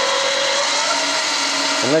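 Hercus PC200 CNC lathe's spindle and drive running at speed, a steady whine with several fixed tones, the chuck spinning an aluminium bar before the cut.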